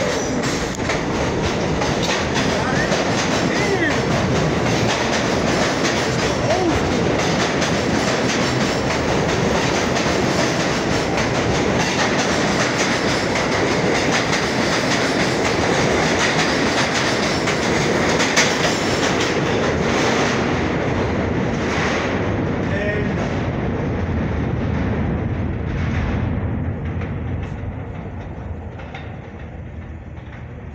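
R46 subway train pulling out of the station and passing close by: a loud, steady running noise with wheel clatter. It fades away from about twenty seconds in as the last cars go into the tunnel.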